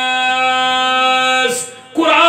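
A man's voice holding one long, steady sung note into a microphone, the drawn-out melodic delivery of an Urdu/Punjabi religious orator. The note breaks off about a second and a half in, followed by a brief hiss.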